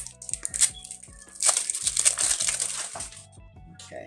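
A small cardboard makeup box being opened and its wrapping handled by hand: a few light clicks, then a crinkling, crackly rustle from about a second and a half in that lasts nearly two seconds. Soft background music runs underneath.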